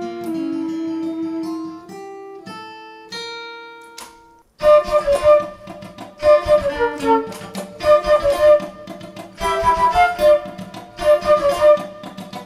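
Acoustic guitar picking single ringing notes that climb in pitch and die away about four seconds in. Then a flute melody, its keys worked by foot pedals, comes in over strummed guitar.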